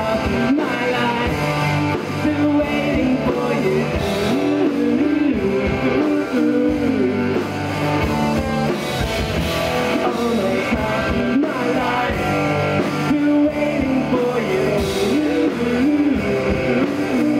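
A rock band playing live: electric guitars and an amplified acoustic guitar over a drum kit, loud and continuous.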